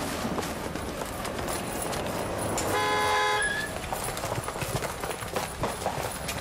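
A vehicle horn sounds one short, steady toot about three seconds in, over street noise. Footsteps go on alongside it.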